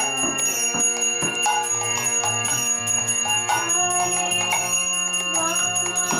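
A hand bell rung continuously in quick strokes during an arati offering to the deities, over devotional music with a steady low drone.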